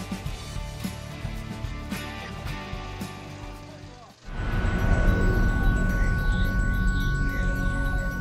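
Background music fading down to a brief dip about halfway through, then louder, bass-heavy title music with steady held tones and rising and falling sweeps.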